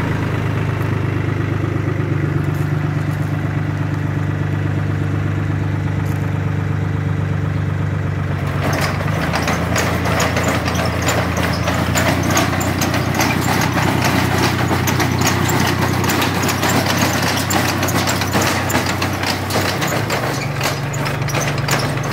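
Tractor engine running steadily. About eight seconds in, the PTO-driven tine mechanism of a SISIS Soil Reliever aerator starts up, adding a fast, continuous metallic clatter of its tines and cranks over the engine.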